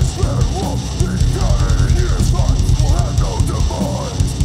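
Metalcore band playing live at full volume: distorted guitars and bass over a pounding drum kit with heavy bass drum, and a vocalist singing into the mic over the top.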